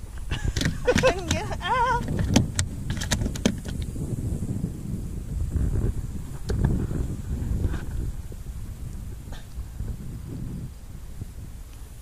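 Crappie flopping on the floor of a small fishing boat: a quick run of knocks and clatters in the first few seconds, then softer thumps and rustling as it is grabbed and held.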